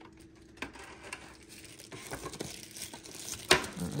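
Clear plastic packaging being handled, crinkling and rustling in scattered small crackles, with one sharp knock about three and a half seconds in.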